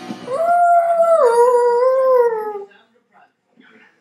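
One long, loud howl lasting about two seconds: it rises at the start, drops in pitch about a second in, wavers, then trails down and stops.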